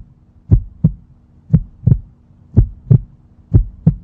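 Heartbeat sound effect: paired low thumps, lub-dub, about one pair a second, four pairs in all, over a faint steady hum.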